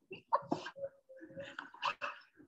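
A woman's suppressed fit of giggling: short breathy bursts of laughter with a thin, held squeal in the middle, as she tries and fails to stop laughing.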